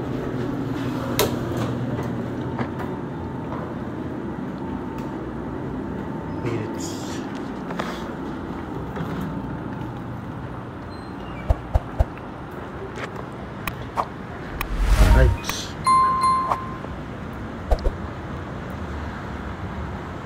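A person walking out through a building's glass door with a metal pull handle. Over a steady hum come a few sharp clicks of the door and its handle, then a loud rush of noise as the door swings open about three quarters of the way in. A short electronic beep follows straight after.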